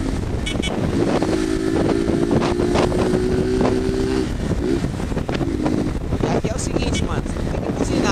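Motorcycle engine running at a steady cruising pitch, with wind rushing over the microphone. The engine's hum is clearest through the first half and fades under the wind noise after about four seconds.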